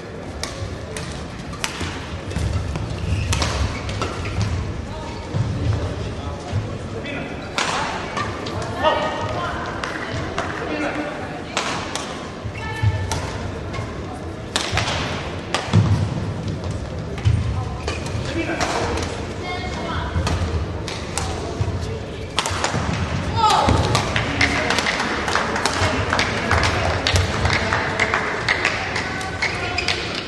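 Badminton play in a large sports hall: repeated sharp cracks of rackets striking the shuttlecock, with thumps of players' footwork on the court. Indistinct voices from the hall run underneath.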